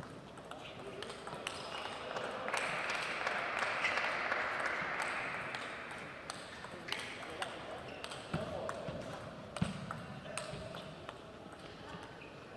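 Table tennis rally: the plastic ball ticking sharply off the rackets and the table in quick, uneven succession, with one of the hardest hits near the end.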